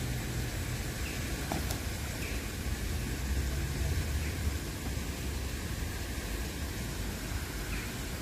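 Steady outdoor background noise: a low rumble under an even hiss, with no clear bird calls standing out.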